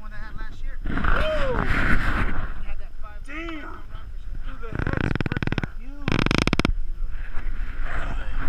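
Men's voices calling out and exclaiming without clear words. About five and six seconds in come two short bursts of rapid clicking noise.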